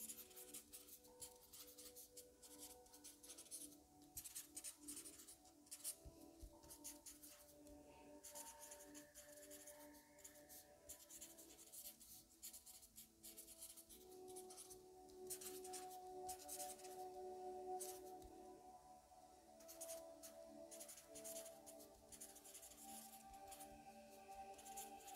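A pen scratching on paper in short, quick strokes of handwriting, over soft background music with sustained, singing-bowl-like tones.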